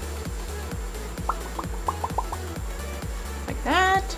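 Background music with a steady beat: regular low bass pulses, with a short run of brief pitched notes in the middle.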